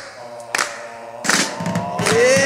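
A short lull between two songs in a music mix: the previous song drops away at the start, leaving a couple of soft knocks and faint held tones, and the next song comes in at the very end.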